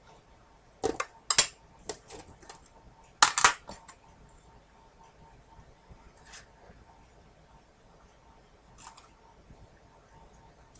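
Clicks and knocks of a plastic storage tub being opened and its lid set down on a cutting mat. There is a cluster of sharp knocks in the first few seconds, then a couple of faint taps.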